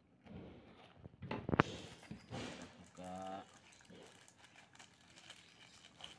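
Plastic courier mailer bag crinkling and tearing as it is pulled open by hand, with a sharp rip about one and a half seconds in.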